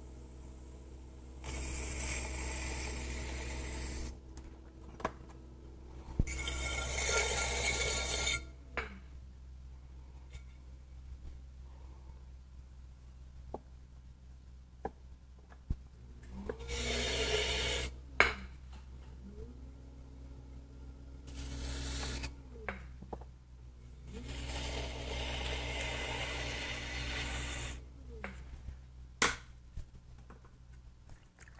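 A wooden stick scraping wet clay on a spinning potter's wheel as a jar is trimmed. There are about five scraping passes of one to four seconds each, the longest near the end, with a few sharp clicks between them over a steady low hum.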